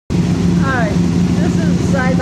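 A man's voice over a steady low hum.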